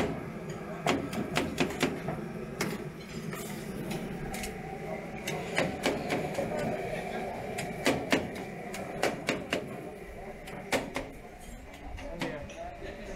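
Irregular sharp knocks and clicks of kitchen work, such as a knife on a cutting board and utensils on trays, over a murmur of background voices.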